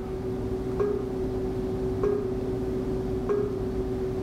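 Steady electrical hum, likely from the virtual welding trainer's equipment, with three short, faint ticks evenly spaced about a second and a quarter apart.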